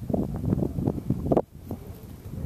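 Wind buffeting the camera microphone: an irregular, gusty rumble that drops off abruptly about one and a half seconds in.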